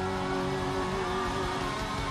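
Live rock band holding a sustained chord, guitars and keyboards ringing steadily, over the noise of a large cheering crowd.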